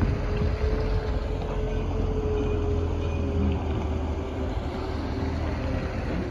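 A heavy diesel engine running steadily: a continuous low rumble with a faint steady whine above it.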